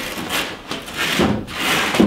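A pickup truck's folded bed cover being pushed and slid at the front of the bed: several short scraping, rubbing strokes.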